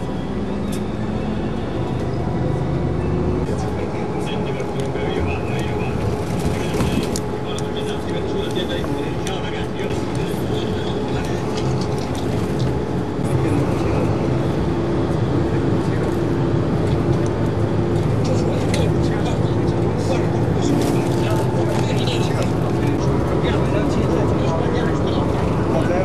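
A steady vehicle drone of engine and road noise, getting a little louder about halfway through, with indistinct voices underneath.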